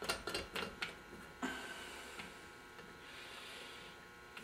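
Light metallic clicks and taps as a hand-held valve guide hone is fitted into the valve guide of an aluminium cylinder head. After about a second and a half these give way to a faint steady hiss.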